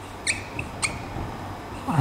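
Felt-tip marker squeaking on a whiteboard as it writes. There are two short squeaks, about a quarter second and just under a second in, with a fainter stroke between.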